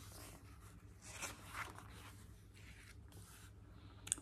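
Faint rustle of a paperback picture book's page being turned by hand, with a couple of soft swishes a little over a second in, against near-silent room tone.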